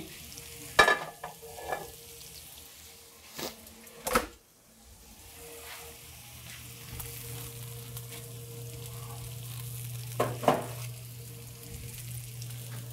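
Chicken sizzling in a hot Griswold cast-iron skillet fresh from the oven, with a few sharp knocks and clatters as the pan is handled and the foil-wrapped brick is lifted off.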